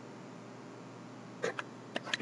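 Steady low room hum, then three short sharp clicks in the last half second.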